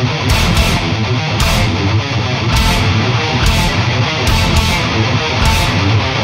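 Instrumental passage of a technical death metal song: distorted electric guitars playing a riff over drums, with cymbal strikes recurring through the passage.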